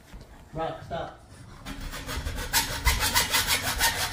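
Hand saw cutting through a bar of a metal pet gate, in fast, even back-and-forth rasping strokes that start about two seconds in and grow louder.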